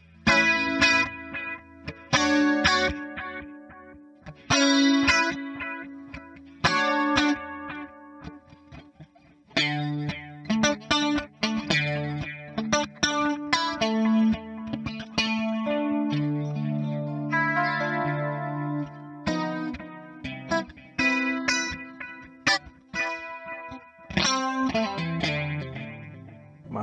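Electric guitar played on a clean patch through a Hotone Ampero Mini multi-effects unit, with its digital delay set to quarter-note time at a low mix. Picked chords ring out with short pauses at first, then phrases play continuously from about ten seconds in.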